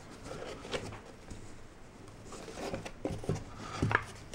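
Faint handling sounds of a plastic coin capsule being pressed and worked into the fitted slot of a display case insert: soft rubbing with a few light clicks and taps, the sharpest near the end.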